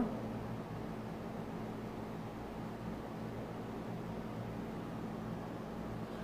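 Steady background hiss with a faint low hum, unchanging throughout: room tone, with no distinct event.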